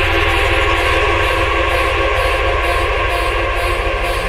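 Future rave electronic dance music: held synth chords over a steady bass, with a light repeating pattern in the treble.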